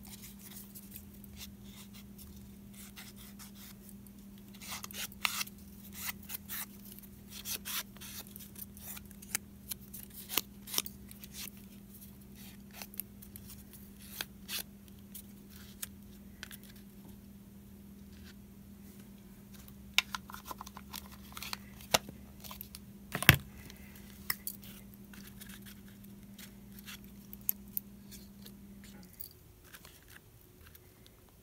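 Scissors snipping paper, with paper being handled and torn, in short irregular snips and rustles, and one sharp louder click a little over twenty seconds in. A faint steady low hum underneath stops shortly before the end.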